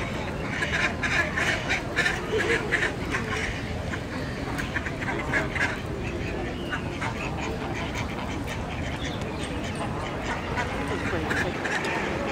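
Waterfowl calling in quick runs of short repeated calls: several in the first three seconds, more around five to six seconds in and again near the end, over background voices.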